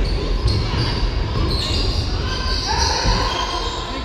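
A basketball being dribbled on a gym's wooden floor, the bounces echoing in a large hall, with players' voices calling out.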